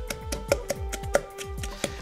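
Pestle pounding chili and garlic in a stone mortar, a run of quick, regular knocks, under background music with held notes.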